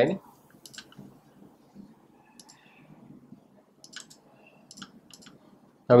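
Computer mouse clicks, a scattered series of short, light clicks spread over several seconds.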